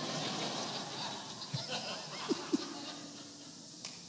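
A congregation laughing together, the laughter fading away over about three seconds.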